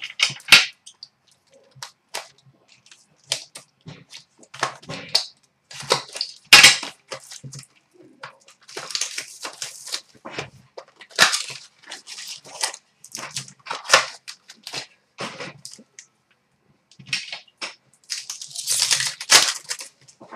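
Trading card packs being torn open and their foil wrappers crinkled, with cards handled in between. The sound is an irregular run of short crackling rustles with brief pauses.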